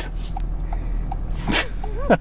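A man's short, breathy burst of nervous laughter about one and a half seconds in, over the steady low hum of the car.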